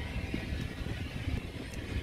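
Steady, engine-like background rumble with hiss from the aircraft ramp, uneven in level and with no clear tone.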